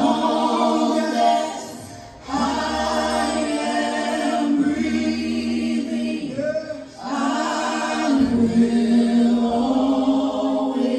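A group of singers singing a slow worship song in long held notes, with short breaks between phrases about two seconds and seven seconds in.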